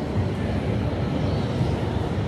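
Steady low rumble of hall ambience, with no distinct ball clicks.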